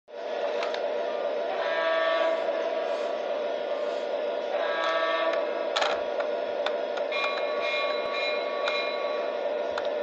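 A toy Santa Fe diesel locomotive's electronic sound effects: a steady diesel-engine drone, with two short horn blasts about 2 and 5 seconds in and a longer tone later on. Scattered clicks are heard along with them.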